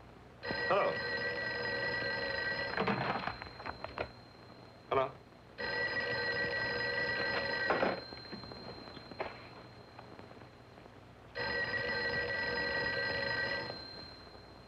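Telephone bell ringing three times, each ring a little over two seconds long with pauses of about three seconds between them, and a brief other sound between the first two rings.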